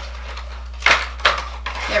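A clear plastic box being opened by hand to get a jade face roller out: plastic rustling and two sharp clacks about a second in, over a low steady hum.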